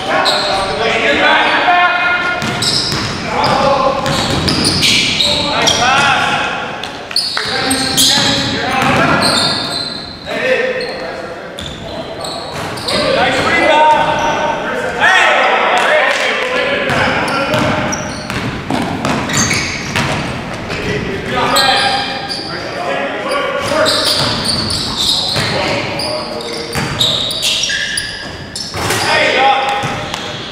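Pickup-style basketball game in a large gym hall: the ball bouncing and players' sneakers and footsteps on the hardwood court, with indistinct shouts from the players.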